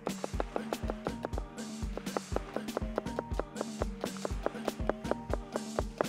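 Chef's knife slicing a red onion thin on a plastic cutting board: a quick, even run of knife taps on the board, over background music.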